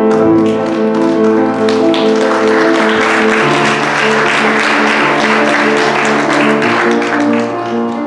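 Worship band playing sustained keyboard chords with guitar, with a spell of clapping from about two to seven seconds in.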